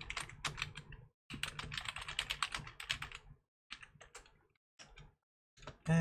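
Computer keyboard typing: quick runs of keystrokes with short pauses about a second in, around three and a half seconds, and near five seconds.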